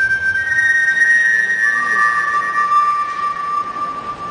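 Program music in a quiet passage: a few long, held high notes, the melody stepping up and then down to a lower note held for several seconds.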